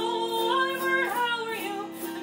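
Intro music: a female voice singing a melody, holding notes and sliding from one pitch to the next.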